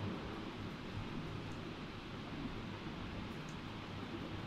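Steady low hiss with a faint low hum: microphone room tone, with no distinct sound event.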